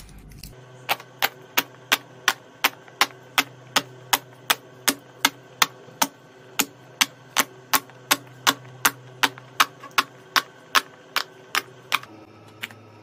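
Sharp clicks at an even pace of about three a second, starting about a second in, over a faint low steady hum.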